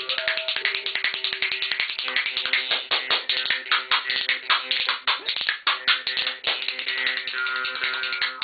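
Rajasthani jaw harp twanging a steady drone with a melody of shifting overtones, over a pair of spoons clicking in a fast, dense rhythm: an improvised jaw harp and spoons duo.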